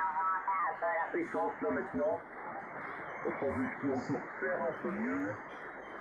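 A voice received off the air in lower sideband on the 40-metre amateur band through an RTL-SDR clone dongle, with narrow, band-limited radio speech and no highs above about 2 kHz over a steady hiss of band noise.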